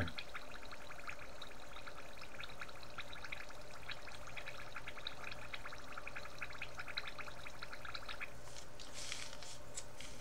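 A steady fine crackle of small liquid drips or bubbles, with a few sharper clicks near the end.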